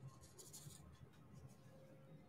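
Faint, brief scratchy rubbing about half a second in, followed by a few light ticks, from diamond painting work: a drill pen handling small resin drills.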